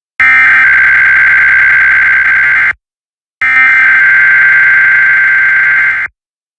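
Emergency Alert System SAME header data bursts from a software ENDEC, encoding a Required Weekly Test. There are two long, loud, buzzing bursts of rapidly warbling digital tones, each about two and a half seconds, with a short gap between them.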